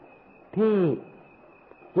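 Speech only: a Thai monk's voice says a single drawn-out syllable about half a second in, set between pauses. A faint steady high whine runs under the recording.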